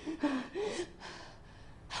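A woman's frightened gasps: two short pitched breaths in the first second, then quieter breathing.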